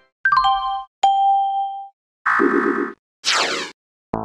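Four short Windows 2000 system alert sounds played one after another with silent gaps between. First comes a quick run of falling chime notes, then a single ding that rings on for most of a second, then a wavering chord, and last a short falling sweep.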